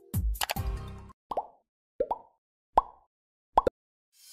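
A thumping electronic music beat cuts off about a second in. Four short, separate sound-effect blips follow, each a quick pitch bend, with silence between them.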